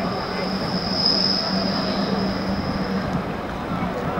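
Meitetsu electric train on the railway bridge, a steady whine that swells about a second in and fades near the end, over the murmur of voices.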